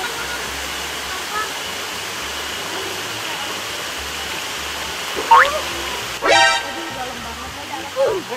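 Steady rush of small waterfalls pouring into a pool. About five seconds in, two brief voice cries break over it.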